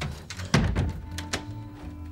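A heavy thump against a wooden door about half a second in, with a few sharp clicks and knocks from the door and its handle as it is forced, over dramatic background music.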